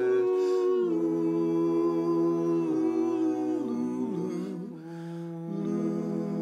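Mixed-voice a cappella quartet humming sustained chords with closed mouths, the harmony shifting every second or so and dipping briefly in loudness about five seconds in.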